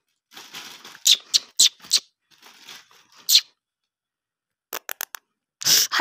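Crinkling and rustling of a plastic shopping bag as a cat plays beside it, in several sharp bursts during the first half. A few quick clicks come near the end.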